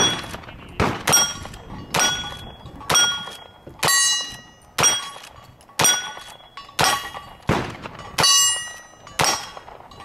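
A string of about ten gunshots at roughly one a second, each answered by the ring of a struck steel target, as a cowboy action shooter works through a stage.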